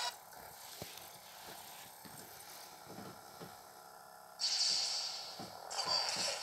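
Menu music cuts off, leaving a quiet stretch with a few faint clicks while the DVD moves to its sneak peeks. About four and a half seconds in, a loud, bright hissing whoosh plays through the portable DVD player's small speaker for just over a second, opening the Disney Blu-ray promo.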